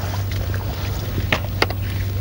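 Water sloshing around chest waders as a wader steps out of shallow margin water, over a steady low hum. Two sharp clicks come about a second and a half in.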